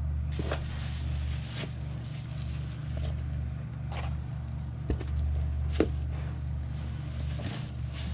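Hands rummaging through moist worm castings: soft rustling and a few faint clicks, over a steady low hum.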